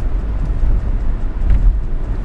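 Steady low drone of engine and road noise inside a classic car's cabin while driving on a highway.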